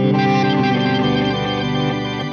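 Electric guitar chord played through the Eventide H9's Crystals preset, ringing out under a shimmering wash of pitch-shifted delay and reverb and slowly fading.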